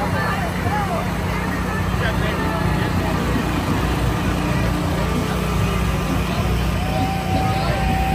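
Farm tractor engine running steadily as it tows a parade float past close by. Crowd voices call out over it, with one long held call near the end.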